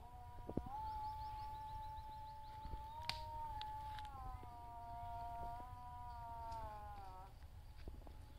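One long, high-pitched drawn-out call or note held for about six seconds, stepping slightly up and down in pitch before falling away, with a few light knocks.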